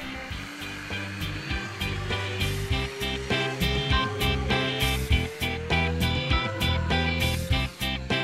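Background music with a steady beat, over the whine of a radio-controlled Twin Otter floatplane's twin electric motors and propellers rising steadily in pitch as the model speeds up across the water and lifts off for takeoff.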